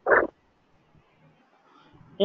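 One short, croaky voice-like grunt from a person, about a fifth of a second long, right at the start, then quiet room tone.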